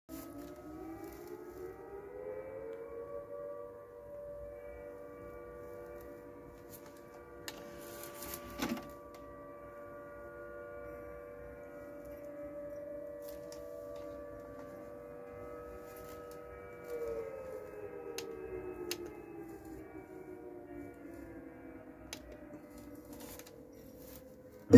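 Denon DCD-755AE CD player's drive loading and reading a disc: a faint motor whine that rises in pitch as the disc spins up, holds steady while the disc is read, then falls in pitch about two-thirds through. Scattered small clicks from the mechanism, the loudest about nine seconds in.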